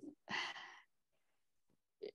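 A woman's single short breath, a soft sigh of about half a second, taken in a pause mid-sentence.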